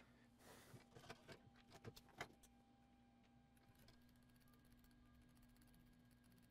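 Near silence broken in the first couple of seconds by faint handling sounds at the bench: a brief soft rustle and several small clicks and taps, the last one the loudest. After that only a faint steady low hum remains.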